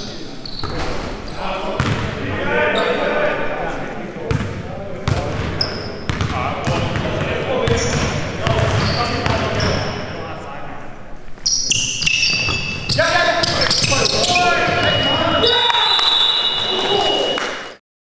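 Basketball game in a gym: players' voices calling out over the ball bouncing on the court floor, echoing in the large hall. The sound cuts off abruptly just before the end.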